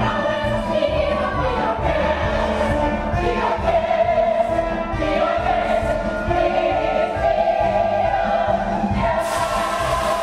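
Live stage-musical chorus and pit orchestra, the ensemble singing in sustained full harmony over the orchestra. A steady hiss comes in near the end.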